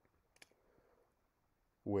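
Near-silent room tone broken by a single faint, sharp click a little under half a second in.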